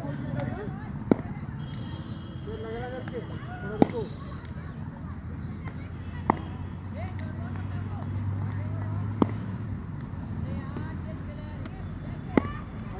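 Cricket bat striking a ball for catching practice: four sharp cracks, one every two to three seconds.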